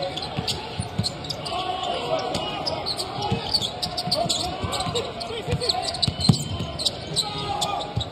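A basketball dribbled on a hardwood court with sharp bounces throughout, amid the squeaks of sneakers during live play. The arena is nearly empty, so the court sounds carry with no crowd noise over them.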